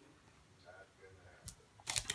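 Quiet room with a faint low murmur, then two brief clicks about a second and a half in, from a plastic product tube and box being handled.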